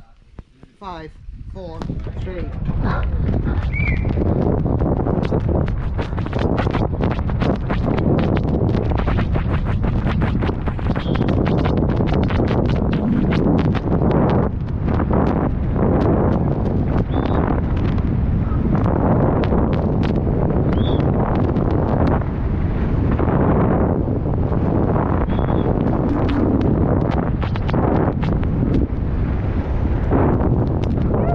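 Downhill mountain bike ridden flat out down a rough dirt and gravel trail, heard from a helmet camera: a steady wind rush over the microphone with tyre noise and a constant run of sharp knocks and rattles from the bike over the bumps. It starts low and rises to full loudness about two seconds in, as the run gets going.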